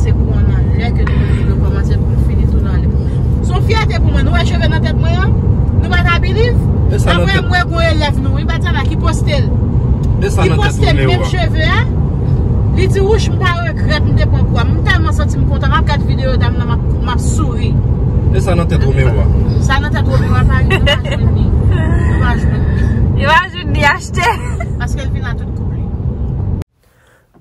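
Steady low road and engine rumble inside a car's cabin at highway speed, with voices talking over it.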